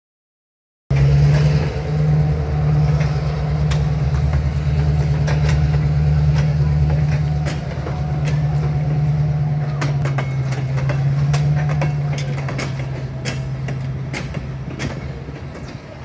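Railway tank cars rolling past, hauled by an EMD GP38 diesel locomotive: a steady low engine drone under sharp, irregular clicks of wheels over rail joints. The sound fades gradually over the last few seconds.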